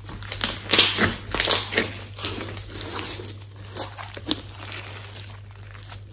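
Glossy slime mixed with clay being squeezed and pressed by hand, giving a run of uneven wet crackles and squelches, loudest in the first two seconds.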